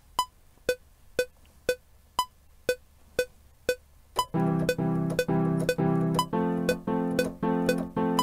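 Cubase metronome clicking a count-in at 120 BPM, two sharp clicks a second. About four seconds in, a software piano joins in time with the click, playing repeated chords about twice a second from a MIDI keyboard.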